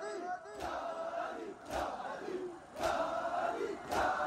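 A large crowd of men doing matam: their hands beat their chests together in four sharp slaps about a second apart, while many voices chant and call between the strikes.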